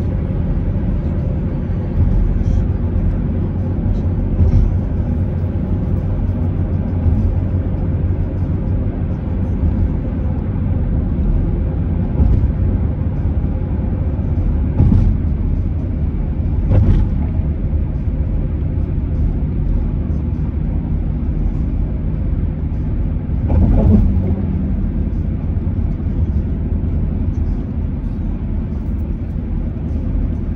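Steady low road rumble of tyres and engine heard from inside a moving car, with a few brief louder bumps partway through.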